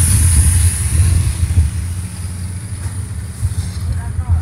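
A large engine running steadily with a low rumble, easing somewhat in level after about a second and a half.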